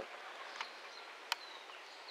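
Quiet outdoor background with a few faint high chirps and one sharp click a little over a second in.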